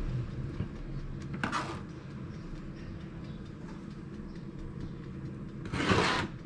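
A kitchen appliance motor hums steadily. Over it come two brief handling sounds as food is tipped into a salad bowl: a short scrape about a second and a half in, and a louder one near the end.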